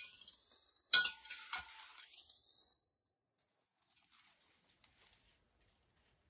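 Leaf stems being pushed into a large glass vase. There is a sharp clink against the glass with a brief ring about a second in, and the leaves rustle for about two seconds after it. Then it goes near quiet, with a few faint ticks.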